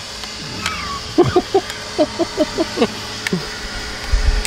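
A man chuckling to himself: a quick run of short, breathy laughs starting about a second in and stopping near the end of the third second.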